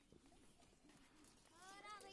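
Quiet outdoor background with faint distant voices; in the last half second a high-pitched voice begins, its pitch rising.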